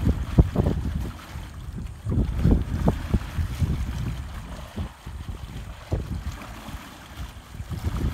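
Wind buffeting the microphone in irregular low gusts, over water swirling and churning around wooden posts at the edge of a creek.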